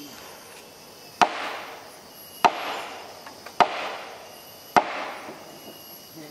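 Four sharp knocks, evenly spaced a little over a second apart, each followed by a brief rustling tail.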